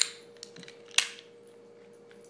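Two sharp metallic clicks, the second about a second in and the louder, as a Taurus 740 Slim pistol's slide is wiggled loose on its frame during field-stripping, with a few faint ticks between them.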